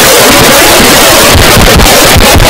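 Loud, steady static hiss filling every pitch at close to full volume, a recording fault that drowns out the room.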